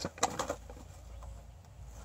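A shiny foil gift bag rustling and crinkling as a puppy noses into it, with a few short crinkles in the first half second and then only faint rustling.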